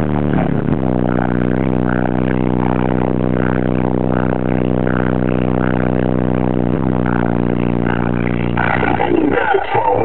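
A song played loud through a car audio system with four 15-inch Alpine Type R subwoofers on a Hifonics XX Goliath amplifier, heard inside the car: deep sustained bass notes that go very low, under a steady beat. Near the end a voice comes in over the music.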